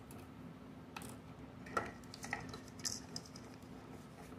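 A few light clicks and taps of small plastic toy parts being handled on a wooden table, with a short papery rustle about three seconds in.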